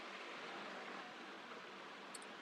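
Faint steady hiss of room tone and microphone noise, with no distinct events.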